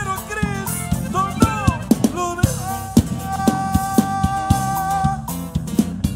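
Live band playing an upbeat Spanish-language Christian song: a male singer with saxophone and drum kit over a steady beat, with one long note held in the middle.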